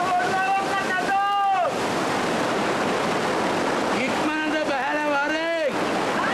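A person's voice in drawn-out, held and gliding tones, a first phrase in the opening second and a lower wavering one about four seconds in, over a steady rushing noise.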